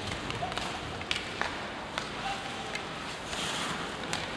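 Ice hockey arena during play: several sharp clacks of sticks, puck and boards over a steady low crowd hum.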